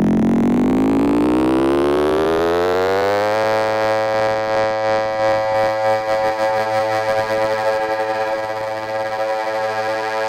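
House music from a DJ mix: a synthesizer sweep climbs steadily in pitch for the first three seconds or so, then holds one sustained note whose loudness wavers.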